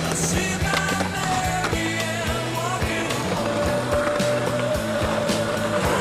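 Skateboard noise, with sharp clacks and knocks of the board, over a rock music soundtrack of long, bending guitar notes.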